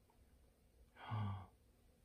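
A man's short, breathy sigh-like vocal sound about a second in, with near silence around it.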